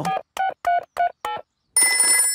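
Cartoon mobile-phone keypad beeps, five short tones about three a second, as a number is dialled. Near the end a desk telephone starts ringing.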